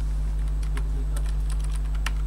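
Typing on a computer keyboard: a run of about eight quick keystrokes in the second half, over a steady low electrical hum.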